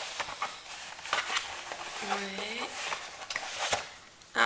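Rustling and crinkling of paper and cardboard, with many small scrapes and taps, as hands rummage through a cardboard box. A brief murmur of voice comes about two seconds in.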